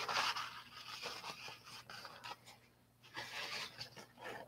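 Faint rustling and scraping as hands handle the cardboard mold box, in two soft spells near the start and about three seconds in, with quiet between.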